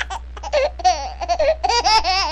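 Cartoon ghost sound effect: a very high-pitched laughing, chattering voice in quick bending syllables over a steady low hum.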